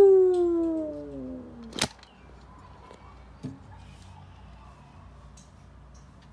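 A single long vocal call, falling steadily in pitch over about two seconds, cut off by a sharp click; a softer knock about a second and a half later.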